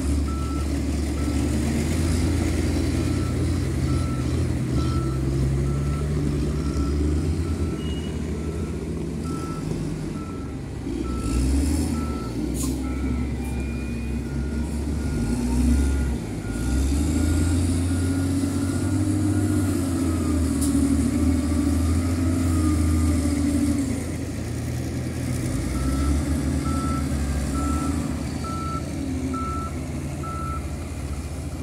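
Diesel wheel loaders working a stockpile, engines running with the load rising and falling several times. A backup alarm beeps steadily, about one and a half beeps a second, for most of the first twenty seconds and again near the end as a loader reverses.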